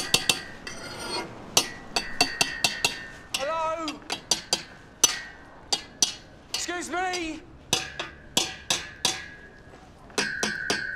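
Metal clanking: a string of sharp, ringing metallic knocks, irregular at about two or three a second. Two drawn-out wavering pitched sounds come about three and a half and seven seconds in.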